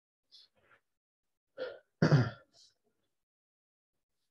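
Someone clearing their throat about two seconds in, in two quick parts, the second louder, after a few faint short sounds.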